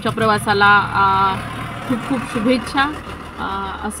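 A woman talking, over a steady low rumble of vehicle noise.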